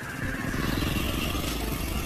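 Audi RS5 Sportback's 2.9-litre twin-turbo V6 running at low speed, its RS exhaust giving a rapid pulsing rumble that grows louder over the first half second and then holds steady.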